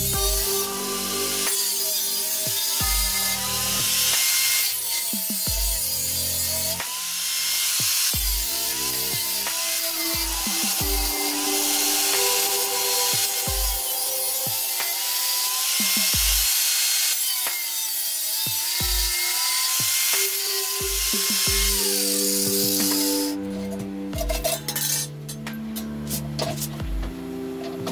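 Angle grinder cutting slots into a thin steel tin can: a harsh, high grinding hiss whose motor pitch wavers as the disc bites, with short breaks between cuts. The grinding stops about three seconds before the end, leaving background music with a steady low beat and light metal clinks as the can is handled.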